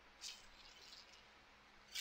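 Near silence: room tone, with one faint, brief soft noise about a quarter of a second in.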